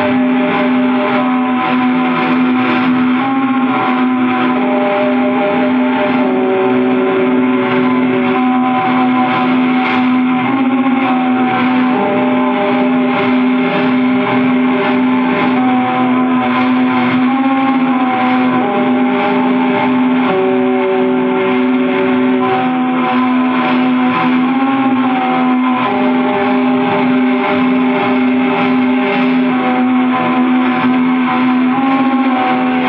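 Distorted metal music from a demo-tape recording: a held low droning note with higher sustained notes that change every few seconds above it.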